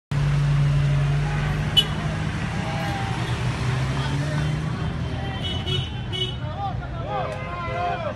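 Street traffic heard from a moving vehicle: a steady low engine hum with road noise. People's voices come in faintly in the second half, and there is one short sharp click about two seconds in.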